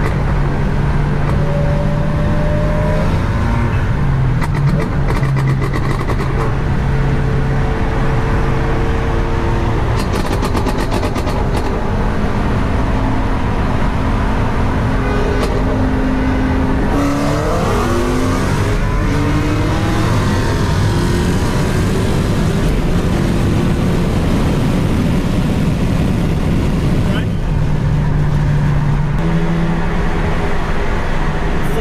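Supercharged 6.2-litre HEMI V8 of a modified six-speed manual Dodge Challenger Hellcat with catless mid-pipes, heard from inside the cabin while driving at highway speed. It is a loud, steady engine drone whose pitch holds for several seconds at a time and shifts a few times, with a brief sweep of rising and falling tones about seventeen seconds in.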